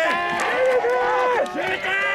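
Many spectators' voices shouting and calling out at once, with several long held shouts overlapping.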